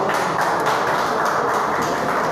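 Audience clapping: many quick hand claps merging into a dense, steady patter.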